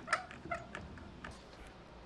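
Several short, brief squeaks in the first second and a half, then only faint room noise, as the kayak and a clamp shift against the wooden stand.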